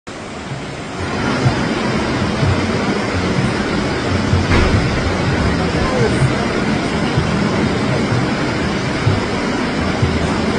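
Loud, steady rushing of a river in flash flood, brown floodwater pouring past close by.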